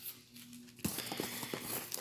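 Small cardboard product boxes being handled in a shipping carton: a sharp tap about a second in, then a few lighter knocks and rustling as they are moved.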